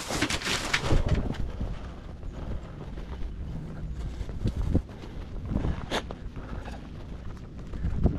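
Plastic grocery bags crinkling for about the first second, then footsteps on pavement with a low rumble of wind on the microphone and a few scattered knocks.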